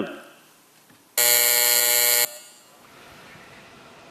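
Voting buzzer sounding one steady, buzzy tone for about a second, signalling that the electronic vote on a request has opened.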